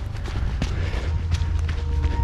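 Footsteps of a person running, a series of short light impacts, over background music.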